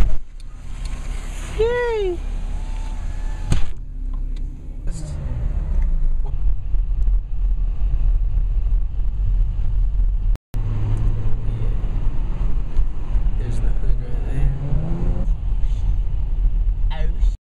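Inside the cabin of a 2010 Chevrolet Camaro V6 driving on the road: a steady low engine and road rumble, with the engine note climbing twice as the car accelerates. The sound cuts out for a moment about two-thirds of the way through.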